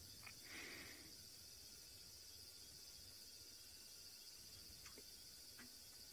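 Near silence: faint night ambience with a steady high-pitched drone, and a brief soft sound about half a second in.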